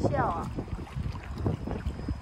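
Swift river current rushing and splashing around a kayak, with wind buffeting the microphone as a low rumble.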